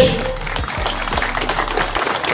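Audience clapping, many scattered claps, with music playing in the background.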